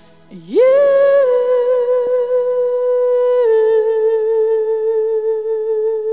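A female singer holding one long, loud note with vibrato, almost unaccompanied: the voice scoops up into it about half a second in and steps down slightly about three and a half seconds in.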